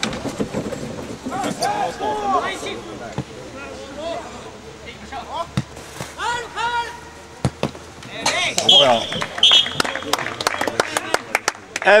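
Footballers shouting to one another during open play, with scattered sharp knocks of the ball being kicked. The shouting grows louder from about two-thirds of the way through.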